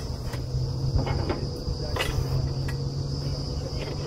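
Truck-mounted borewell drilling rig's engine running steadily, with a high steady whine above it and a few sharp metallic clicks and knocks, the loudest about two seconds in.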